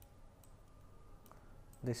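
Quiet room tone with a faint single computer-mouse click a little past the middle; a man's voice starts right at the end.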